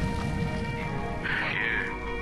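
Dramatic intro music under an animated logo: held tones over a fading low rumble, with a short rough, growl-like sound effect a little past halfway.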